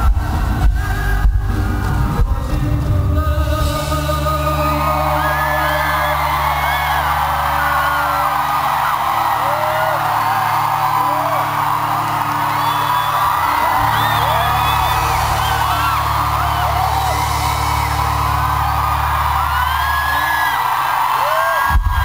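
A live rock band ends a song with a sung note and a few hard drum hits, then holds a low sustained chord while the concert audience cheers, whoops and screams over it.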